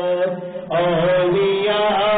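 A voice chanting an Urdu Sufi devotional poem (kalam) in a slow melody, holding long notes that glide between pitches. About half a second in there is a short breath gap, then the next line begins.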